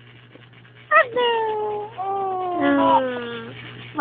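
High-pitched, sing-song baby talk from a woman cooing to her infant: a drawn-out call about a second in that starts high and falls, then more lilting calls, with a second, higher voice joining near the end.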